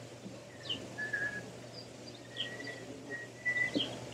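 Birds calling faintly: scattered short high chirps and a few thin, steady whistled notes.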